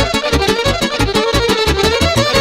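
Live band music with a fast dance beat, an electric violin playing the lead melody in wavering, bending phrases.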